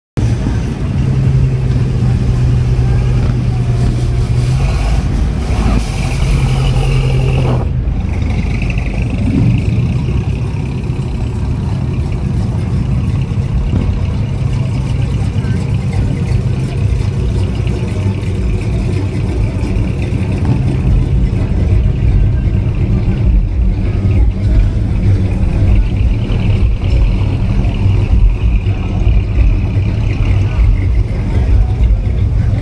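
Classic cars and a lowered pickup driving slowly past one after another, engines running with a steady low rumble.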